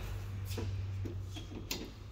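A few faint clicks and knocks, with a sharper click near the end, over a steady low hum.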